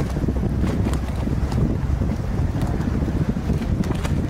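Wind buffeting the microphone in a steady, loud low rumble, with faint light ticks scattered over it.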